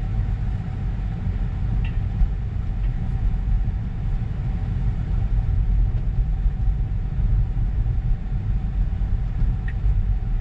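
Steady low rumble of tyre and road noise inside the cabin of an electric 2023 Tesla Model 3 RWD rolling slowly, with a faint steady hum above it.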